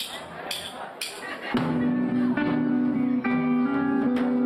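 A live ska band starting a song. Three sharp count-in clicks come about half a second apart, then the full band comes in loud about one and a half seconds in, with sustained guitar chords.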